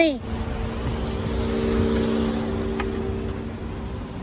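A woman's shout of "Honey!" at the very start. Then a motor vehicle's engine runs with a steady hum that swells to a peak and fades out before the end, over wind rumble on the microphone.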